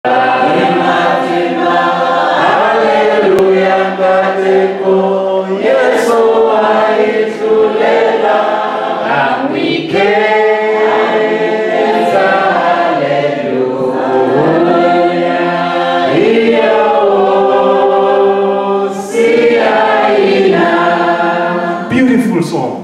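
Unaccompanied singing of a worship song, loud, with long held notes and sliding changes of pitch. It starts abruptly out of silence.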